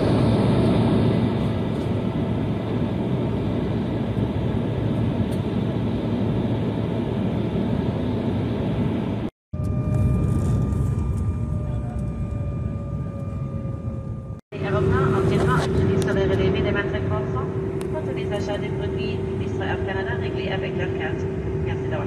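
Jet airliner cabin noise heard from a window seat: a loud, steady rush of engine and air noise. It breaks off abruptly about nine seconds in and again about fourteen seconds in. In the quieter middle stretch, with the aircraft on the ground, there is a steady engine whine and a slowly falling tone; the last stretch has a steady hum with voices over it.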